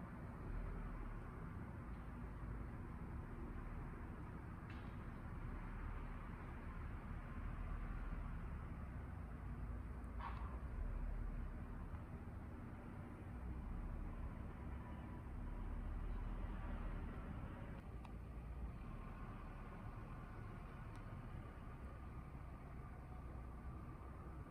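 Faint steady outdoor background noise: a low rumble that swells and fades with a soft hiss over it, and a faint short chirp about ten seconds in.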